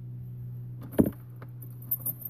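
A steady low hum with a few short clicks and rattles over it. The loudest clatter comes about a second in, with more near the end.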